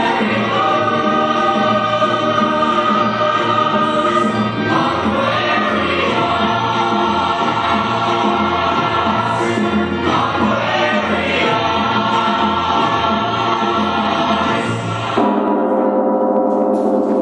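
Choral pop music: many voices singing long held chords over a steady beat. Near the end it changes to one sustained ringing chord.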